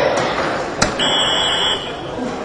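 A soft-tip dart strikes an electronic dartboard with a sharp click, and the machine answers with a short, steady electronic beep lasting under a second, registering a triple 20 hit. Murmur of a crowded hall runs underneath.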